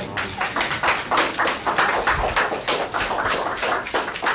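Many still cameras clicking rapidly and irregularly, several shutters firing a second in overlapping bursts, as a pack of press photographers shoots.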